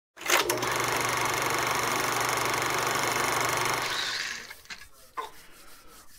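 A steady, rapid mechanical buzz with a low hum, starting with a couple of clicks and fading out about four and a half seconds in.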